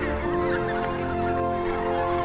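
A flock of large waterbirds calling, with many overlapping honking calls, over music with long held notes.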